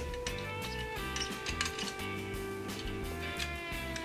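Background music with steady held notes, over a few light clicks of camera shoulder rig parts being handled.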